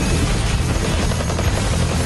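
Continuous rapid automatic gunfire from a film battle scene, a dense, loud rattle over a heavy low rumble.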